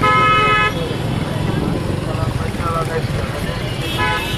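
A vehicle horn held in one long steady blast that cuts off under a second in, over the rumble of street traffic and crowd chatter.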